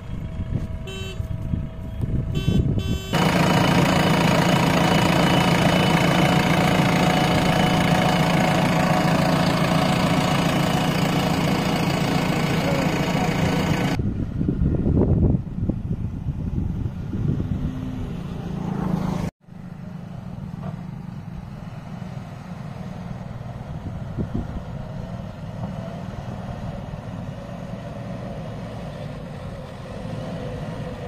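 JCB 3DX backhoe loader's diesel engine running as the machine drives over a field. It is loud and steady with a low hum for about ten seconds, then after a break it runs on more quietly.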